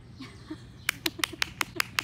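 A toddler clapping her hands, a quick even run of small claps, about five a second, starting about a second in.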